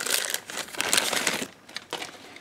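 Clear plastic bag crinkling as hands open it and pull out the plastic kit parts, for about a second and a half, then a single small click near the end.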